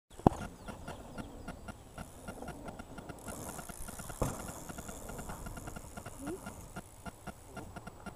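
Mountain bike riding a dirt pump track past the camera: a high hissing rush from about three seconds in, with a sharp knock just after four seconds as it comes over a roller. A sharp click right at the start and a faint steady ticking about five times a second run under it.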